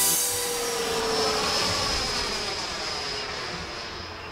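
Jet aircraft flying past overhead: a rushing jet noise with a high steady whine and a tone that drops in pitch as it passes, slowly fading away.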